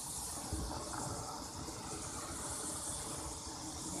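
Steady outdoor background hiss with a low rumble, and a soft low bump about half a second in.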